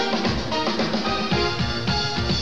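Live instrumental music, loud and steady: a drum kit played busily over held pitched notes and a quickly moving bass line.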